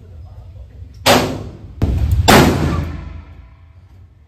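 Taurus Tracker .357 Magnum revolver firing in an indoor range: two loud shots about a second and a quarter apart, with a quieter bang between them, each report ringing out in the range's echo.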